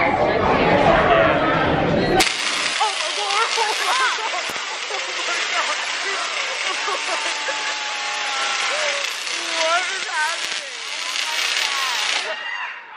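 Large Tesla coil firing: a steady electric buzz from its arc discharges that starts abruptly about two seconds in, with onlookers' excited voices over it.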